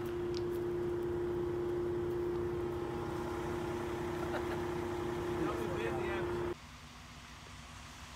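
Concrete mixer truck running: a steady engine hum with a constant whine over a low rumble, with faint voices. The sound drops off suddenly to a much quieter outdoor hush about six and a half seconds in.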